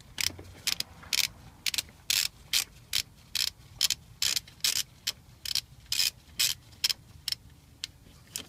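Socket ratchet wrench being swung back and forth on a bolt at the car's alternator, its pawl clicking in short rasps about twice a second.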